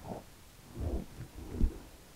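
Three soft, low thuds as toasted bread croutons are dropped into a bowl of cream soup.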